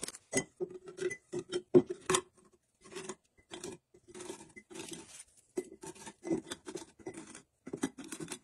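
Wasa mini crispbread rounds being set one by one into a glass jar: an irregular run of short, light taps and scrapes of hard crispbread against glass and against each other.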